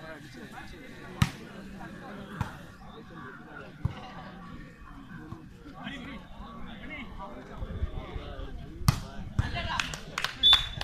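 Volleyball being hit by hand during a rally: a handful of sharp smacks, the loudest about a second in and near the end, over background voices of players and onlookers.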